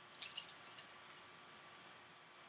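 Small metal tags on a chain necklace jingling and clinking as they are handled, with a burst of jingling in the first second and then lighter clinks.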